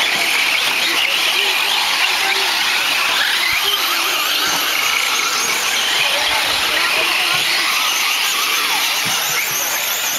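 Radio-controlled 1/10 short course trucks racing on a dirt track, their motors whining up and down in pitch as they accelerate and brake.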